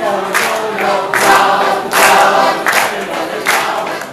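Many voices singing together in chorus.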